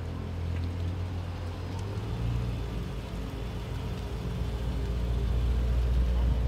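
Low exhaust rumble of a lowered Toyota Celsior's 4.3-litre V8 as the car pulls away slowly, growing louder as it passes close by. Music plays alongside.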